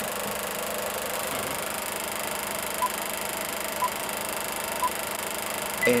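Film-countdown sound effect: an old film projector running with a steady mechanical whir, with three short beeps a second apart in the middle.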